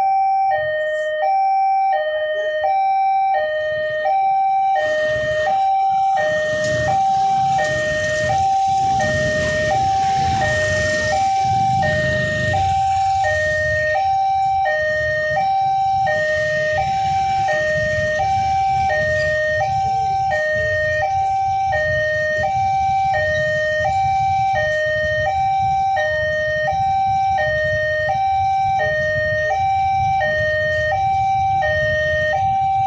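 Railway level-crossing warning alarm sounding continuously: an electronic two-tone signal alternating high and low, about one high–low pair a second, warning that a train is coming. Low road-traffic rumble from waiting motorcycles runs underneath.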